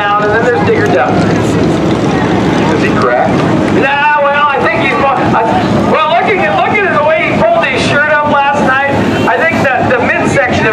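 Stock car engines idling under a caution, with indistinct voices talking over them through most of the clip.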